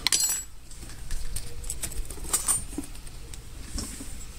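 Light clicks and clinks of handling as small pieces of cut aluminium bar stock are picked up and moved about on a workbench. A few scattered taps come in a small cluster a little past halfway.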